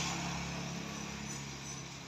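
Small motorcycle engine running steadily as the bike passes close by, its sound fading away as it moves off.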